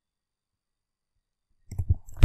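Silence, then near the end a short run of sharp clicks and light knocks: an iPhone's home button being pressed and the handset handled, waking its screen.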